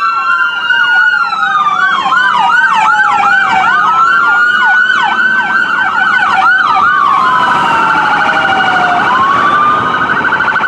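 Electronic sirens of a fire-rescue ambulance and police SUVs sounding together: slow wails rising and falling, overlaid by fast yelping sweeps, giving way about seven seconds in to a rapid warbling tone.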